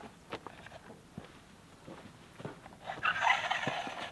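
A van's roof-rack awning being set up by hand: light clicks and knocks from its poles and fittings, then a louder scraping rustle lasting about a second, starting about three seconds in, as fabric or strapping is pulled out.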